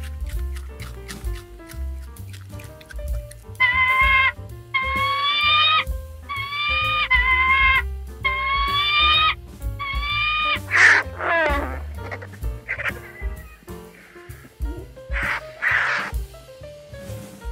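Background music, over which an animal calls five times in quick succession, each call a second or less, followed by a falling cry a little later.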